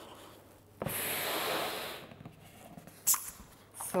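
A person blowing one long breath, about a second long, into a rubber party balloon to inflate it further, starting about a second in. Two brief sharp sounds follow near the end.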